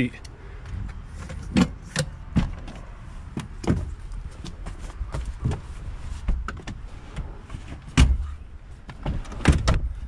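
Scattered knocks, clunks and rustling from a person climbing through the cabin of a 2021 Chevrolet Tahoe into the rear seats, with camera-handling rumble. The loudest thump is about eight seconds in, followed by a quick cluster of knocks near the end.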